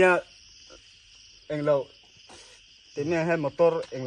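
A steady, high-pitched insect chorus, crickets trilling without a break under the talk.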